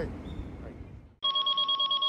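An electronic trilling ring tone added in editing cuts in suddenly about a second in. It is a steady high beep pulsing rapidly, like an old telephone bell.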